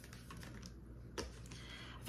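Faint clicks and soft rustles of tarot cards being handled and laid down on a wooden table, with one sharper click about a second in.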